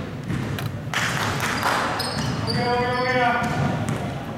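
Basketball bouncing on a sports-hall floor amid players' voices echoing in the hall, with one drawn-out shouted call about two and a half seconds in.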